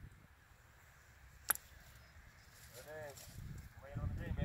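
A golf bunker shot: the club strikes the sand and ball once, a single sharp hit about one and a half seconds in.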